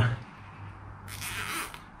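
Nylon cable tie being pulled tight through its ratchet head: a short zipping rasp a little over a second in, after quiet handling of the wires.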